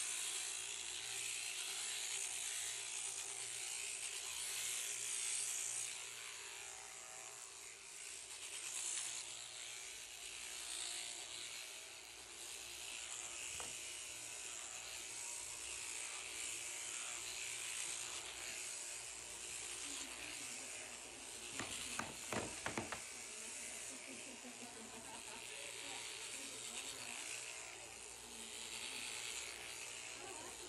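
Electric sheep-shearing handpiece running steadily as it cuts through the fleece. A short run of sharp clicks comes about two-thirds of the way through.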